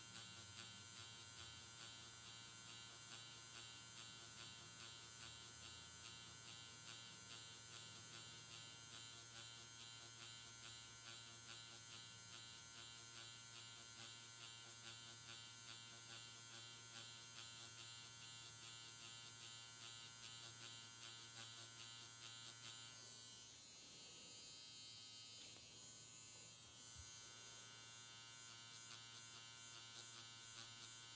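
Pen-style permanent-makeup machine with a fine single-needle cartridge running with a faint, steady electric buzz as it shades pigment into latex practice skin in a pendulum motion. The buzz pulses slightly in loudness and dips briefly about three-quarters of the way through.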